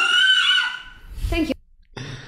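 Speech: a high voice runs on for the first part. About a second in comes a brief low rumble with a short spoken "thank you", followed by a moment of near quiet.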